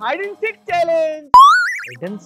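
A cartoon-style "boing" sound effect: a sudden twang about one and a half seconds in, its pitch wobbling upward as it fades over about half a second. It follows a person's voice.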